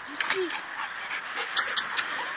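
A dog panting close by. There is one short vocal sound just after the start and a few sharp clicks near the end.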